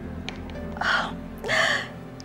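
Two short breathy gasps from a person, the second partly voiced, like a delighted exhaled laugh, over soft background music.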